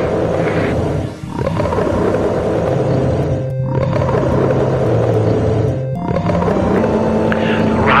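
A wild animal's roar sound effect played over music with held low notes, repeated in long roars of about two seconds each with short breaks between them.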